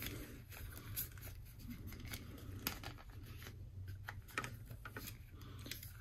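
Faint clicks and rustles of plastic action-figure parts being handled, as a shoulder piece is fitted onto the figure's torso.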